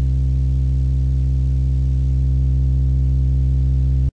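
Sylenth1 software synthesizer playing a single sustained low bass note, deep and steady, that cuts off right at the end.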